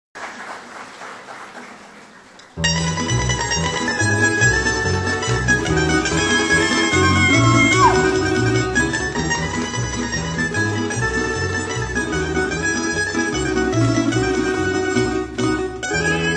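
A tamburica ensemble playing: tremolo-plucked tamburicas over a plucked double bass (berde), starting abruptly about two and a half seconds in after a quiet opening.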